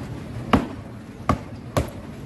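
Three cleaver chops through a fish onto a thick wooden chopping block, each a sharp thud. The first comes about half a second in, and the last two come close together near the end.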